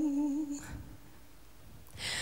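A woman singing unaccompanied, holding a long note with wide, even vibrato that ends about half a second in, followed by a quiet pause before the next phrase.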